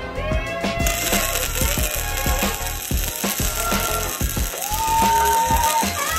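Wire-feed welder arc crackling steadily, starting about a second in, under background music.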